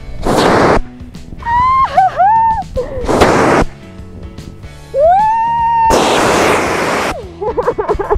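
CO2 fire extinguisher discharged in three short, loud blasts of hiss, each under a second and a few seconds apart, used as a thruster to push a playground swing.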